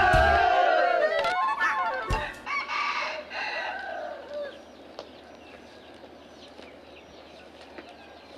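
A rooster crows once, about three seconds in, after loud shouting and music break off within the first second. Faint small-bird chirps follow over a quiet outdoor background.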